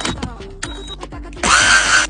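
Cordless drill running in one short burst about one and a half seconds in, its motor whine rising slightly as it drives a screw, over background music.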